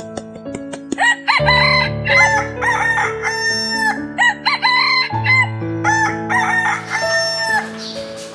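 Roosters crowing, a run of overlapping crows one after another, over soft piano background music.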